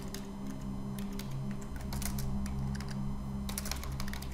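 Typing on a computer keyboard: a scatter of light keystrokes and clicks, over a low steady background hum.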